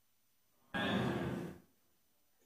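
One short, breathy exhale close to the microphone, a little under a second long, starting suddenly and fading out.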